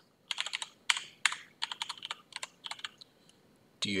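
Computer keyboard keys clicking in a quick run of keystrokes as a short word is typed. The run stops about three seconds in.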